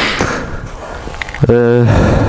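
A man's voice only: a drawn-out hesitation sound in the second half, over a faint steady hiss.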